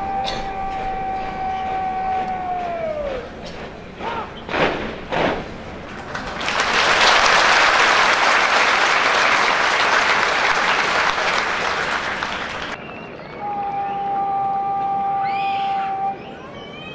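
A long drawn-out shouted drill command held on one pitch, dropping away at its end, then a few short sharp knocks. Then about six seconds of crowd applause, the loudest part, which cuts off suddenly; near the end another long held command begins.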